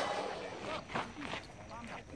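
Faint voices talking, with one faint sharp knock about a second in.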